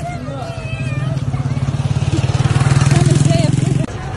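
A motor vehicle engine running close by: a low, steady drone that grows louder and cuts off abruptly near the end, with people's voices over it.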